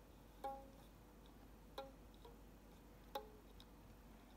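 Ukulele strings plucked one at a time by a toddler's finger: three single soft notes, evenly spaced about a second and a third apart, each dying away quickly.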